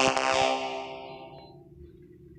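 Electronic piano notes from a smartphone piano app, a dense held chord ringing out and fading away over about a second and a half.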